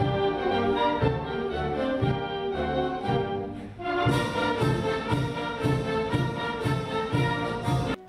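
Concert wind band playing, brass and saxophones over a steady beat; the music eases briefly about halfway through, then carries on.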